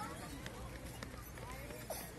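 Indistinct voices of passers-by talking in an outdoor crowd, over a steady low rumble on the microphone, with a brief rising pitched sound near the end.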